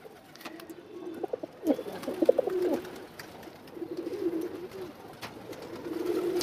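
Domestic pigeons cooing: low, wavering coos in three bouts, about two seconds in, about four seconds in and just before the end.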